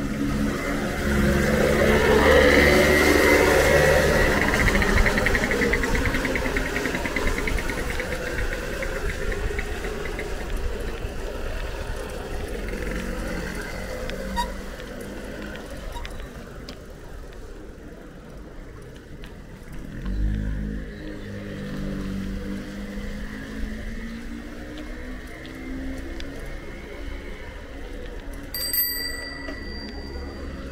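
A motor vehicle's engine passes, swelling over the first few seconds and fading away. A second engine comes up about two-thirds of the way through. Near the end there is a short, bright ringing tone.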